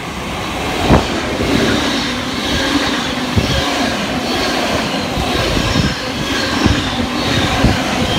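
A V-set double-deck electric intercity train passing through the platform close by: a steady rush of wheels and running gear that grows louder as the cars go past. There is a sharp thud about a second in, and several more thuds follow as the cars go by.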